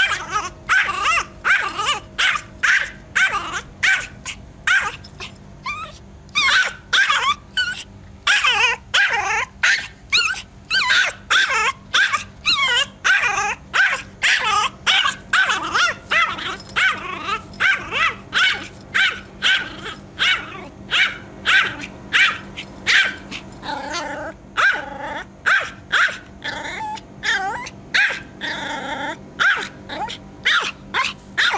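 A Yorkshire terrier barking over and over in quick, high yappy barks, about two a second, with hardly a break.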